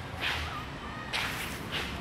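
Footsteps on a concrete floor: three sharp, scuffing steps at a walking pace, over a steady low hum.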